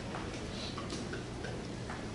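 Faint, scattered light taps and clicks over a steady low room hum.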